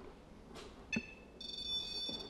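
A REM Pod's electronic alarm going off. A single high tone starts about a second in, with a small knock, and a steady multi-pitched beeping tone follows from about halfway through. It signals a spike in the field the pod is sensing.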